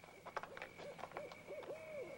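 An owl hooting faintly, a quick run of about four short hoots that each rise and fall in pitch, over a thin steady high tone.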